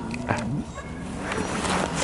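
Sled-team huskies barking and whining while the team stands stopped.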